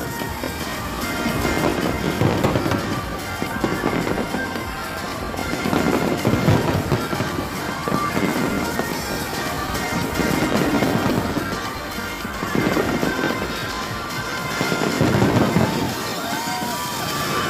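Aerial fireworks bursting in a dense barrage of bangs and crackling, swelling and easing every few seconds, with music playing along.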